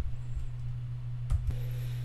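A pause in a talk: steady low hum of the room and recording, with a short soft knock or click about a second and a half in.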